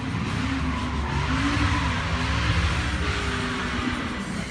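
A motor vehicle's rushing noise that swells and fades over about three seconds, with rock music playing underneath.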